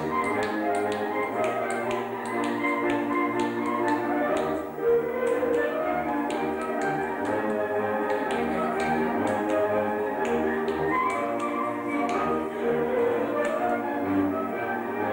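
Transylvanian Mezőség folk dance music: a fiddle-led village string band playing a lively tune over a pulsing bass, with frequent sharp taps keeping time.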